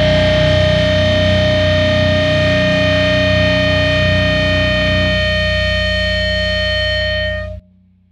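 Heavily distorted electric guitars, with heavy bass underneath, holding the song's final chord in a crust-punk band's live studio take, ringing on with steady high tones, then cut off sharply near the end.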